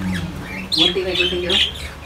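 Small caged pet birds squawking and chirping in high calls about a second in, over a low steady hum.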